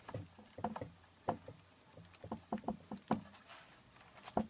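Irregular creaks and knocks from a screw-handled bar clamp being worked down onto a stack of tiles, about ten in four seconds, with no steady rhythm.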